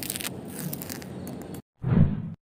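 Sound effect of a razor blade scraping over soft, wet flesh: a crackling scrape with scattered clicks for about a second and a half, then, after a brief gap, a short, louder squelch near the end.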